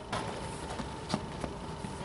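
Faint background noise of the open pitch, with a faint steady tone and a couple of soft knocks, the clearest about a second in.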